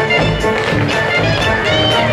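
A group of tap dancers' shoes tapping in unison over loud recorded music.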